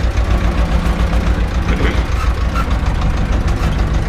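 Tractor diesel engine working in the field, heard from inside the cab: a steady, low, pulsing rumble.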